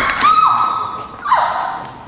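A thud as a woman hits the floor, then her high-pitched cry held for about a second and a shorter cry falling in pitch.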